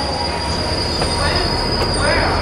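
New Mexico Rail Runner Express bilevel passenger coaches rolling past on the track: a steady low rumble with a continuous high-pitched wheel squeal over it.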